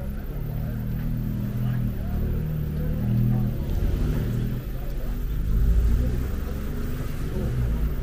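A car engine running close by, a low steady rumble that swells and is loudest about six seconds in, as the car passes slowly.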